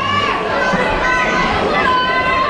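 Spectators shouting at a live fight, several raised voices yelling over one another at once.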